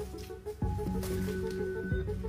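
Background music with held low notes over a quick repeating pattern of short plucked notes.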